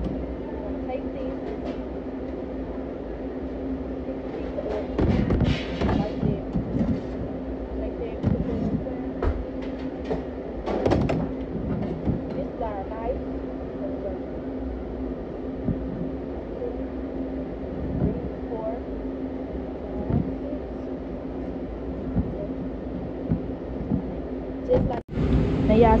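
A rocker-blade pizza cutter knocking against a cutting board as it is pressed through a pizza, in scattered strokes, over a steady hum of kitchen equipment.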